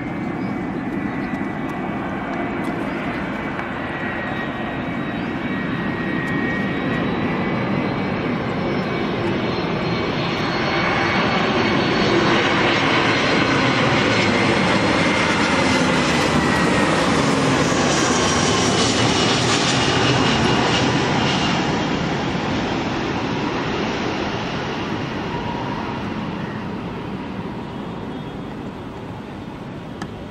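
Airbus A320-200 jet airliner flying past low on approach with its gear down. Its engine noise swells, is loudest for about ten seconds in the middle, then fades away, with whining tones that fall in pitch as it passes.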